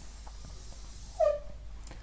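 Pen writing on a whiteboard: faint taps and strokes, with one short high squeak of the pen tip about a second in.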